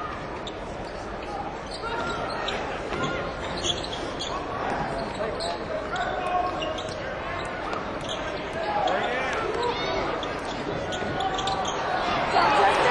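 A basketball bouncing on the court in short, irregular knocks, over a steady murmur of voices from the crowd.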